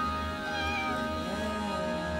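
Background music of steady held tones, with a domestic cat meowing once in the second half: one long call that rises and then falls in pitch.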